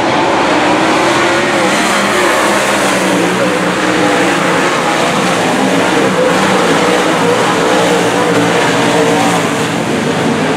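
Dirt late model race cars' V8 engines running hard around the dirt oval, several cars at once: a steady loud drone whose pitch wavers up and down as they power through the turns and down the straights.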